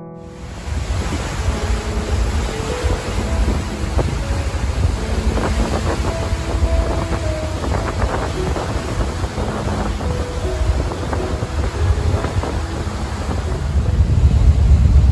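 Wind gusting over the microphone on a ferry's open deck, with the rush of the sea along the hull, starting suddenly about half a second in. Faint background music runs underneath.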